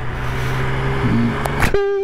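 Yamaha XSR900's inline-three engine running steadily under way, a low even hum over a rush of wind and road noise.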